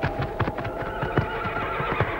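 Hoofbeats of two horses galloping over dry ground, a rapid, irregular drumming of many hoof strikes.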